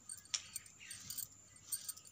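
Bangles on the wrists clinking against each other in a few light, sharp jingling clicks as the hands work over the fabric, the loudest about a third of a second in.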